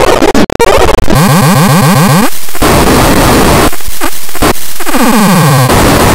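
Loud, harsh distorted noise from a digitally mangled audio edit, with stacked synthetic tones sweeping down in pitch twice and the sound cutting out briefly a few times.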